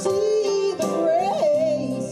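A woman singing live into a microphone over instrumental accompaniment, holding a note and then running quickly up and down in pitch about a second in.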